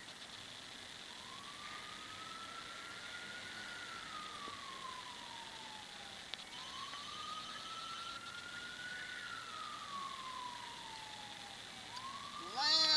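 A faint emergency-vehicle siren in wail mode: one clean tone rising slowly and falling again, about five seconds per sweep, twice, starting about a second in and rising again near the end.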